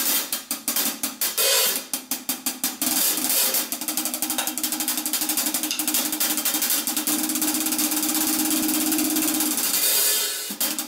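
Acoustic drum kit played solo with sticks: fast snare strokes mixed with hi-hat and Zildjian K cymbal hits. About three seconds in the playing turns into a dense, continuous run of rapid strokes.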